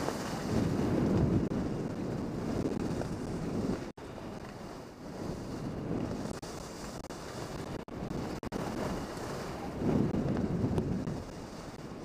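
Wind rushing over the microphone of a camera carried by a downhill skier, mixed with the hiss of skis sliding on groomed snow. The noise swells and eases and cuts out briefly three times.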